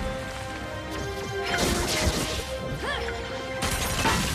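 Cartoon action sound effects over the film score: crashing and tumbling rubble as a wall breaks apart. A short whistling sweep rises and falls about three seconds in, and a new loud blast comes in near the end.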